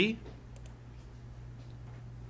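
Two faint computer mouse clicks about half a second in, then another faint click, over a steady low electrical hum.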